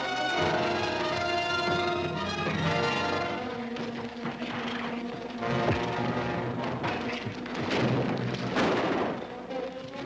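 Dramatic film score music; from about a third of the way in, crashing and rumbling sound effects come in over it, loudest near the end.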